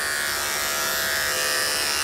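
Corded electric dog-grooming clippers running with a steady buzz as they cut through a goldendoodle's coat.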